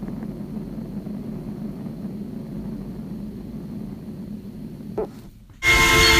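Low, steady rumbling drone of an intro sound effect, with a brief sliding tone about five seconds in. After a short drop, music with bell-like mallet notes starts just before the end.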